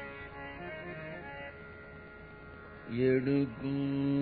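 Devotional Carnatic-style singing. After a quieter stretch with faint sustained instrument tones, a low sung voice comes in about three seconds in.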